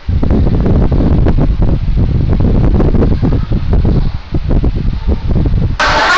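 Electric stand fan blowing straight onto the microphone: loud, fluttering wind buffeting, heaviest in the low end. It cuts off suddenly just before the end.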